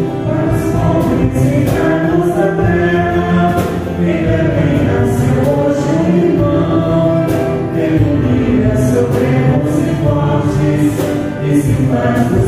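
Church hymn sung by several voices with keyboard accompaniment, continuing steadily.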